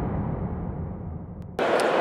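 The low tail of the logo intro's boom sound effect fades away, growing steadily quieter. About one and a half seconds in it cuts off suddenly to the background of a large, busy hall, with a faint steady hum.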